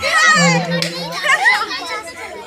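Several people shouting and calling out excitedly over one another, with no clear words.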